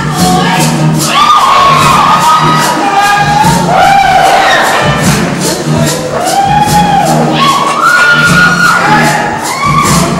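Live show-choir backing band playing an up-tempo show tune with a steady, driving beat, with the audience cheering over it.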